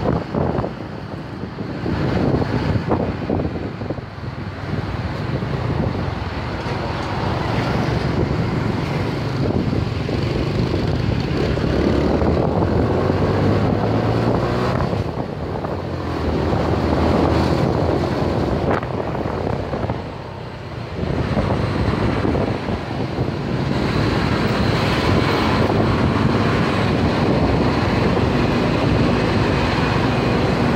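Wind rushing over the microphone on a moving motorcycle, over its engine running and passing road traffic. The engine note rises and falls with speed, and the sound dips briefly about twenty seconds in.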